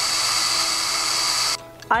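Cordless power drill running steadily at high speed, then stopping abruptly about one and a half seconds in.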